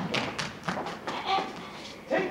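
A quick run of thumps and taps of shoes on the stage floor as actors run across it, the loudest right at the start and several lighter ones following.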